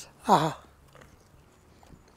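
A man's short, appreciative "aha" of enjoyment as he takes a bite of food, then faint chewing.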